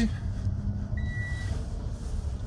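Low, steady rumble inside the cab of a Volkswagen e-Delivery electric truck as it accelerates from a stop, with no engine sound. A single short high beep sounds about a second in and lasts half a second.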